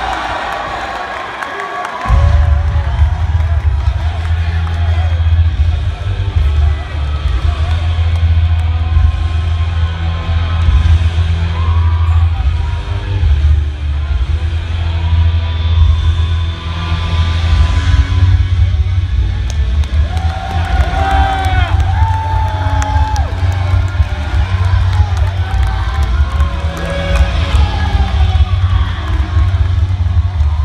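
A wrestler's entrance theme played loud over an arena sound system: a track with a heavy bass beat that kicks in suddenly about two seconds in, with the crowd cheering underneath.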